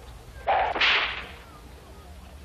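One whip lash, starting suddenly about half a second in and fading within about a second.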